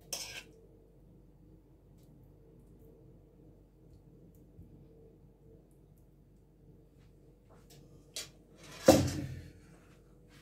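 A metal spoon working in a dish: a brief scrape at the very start, a few light clicks, then one sharp clatter of the spoon against the dish about nine seconds in, the loudest sound, ringing briefly. A low steady hum runs underneath.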